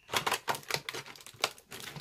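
A clear plastic pack of nail polish bottles being handled, giving a quick, irregular run of sharp plastic clicks and taps.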